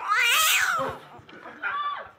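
A cat's yowling meow played as a sound effect: one long wavering yowl, loudest in the first half-second and fading by about one second, then a shorter meow near the end.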